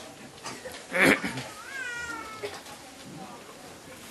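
A short, loud, harsh noise about a second in, then a brief high-pitched animal call that glides up and then falls away, a little under two seconds in.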